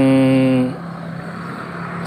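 A man holds a drawn-out, level-pitched 'yang…' for under a second. Then a steady low engine hum continues, with a hiss that swells slightly toward the end, as of a motor vehicle going by on the road.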